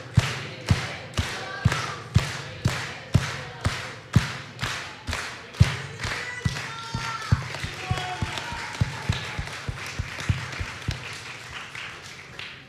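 An audience clapping in unison in a steady rhythm of about two claps a second, over looser applause; the rhythm weakens and fades over the last few seconds.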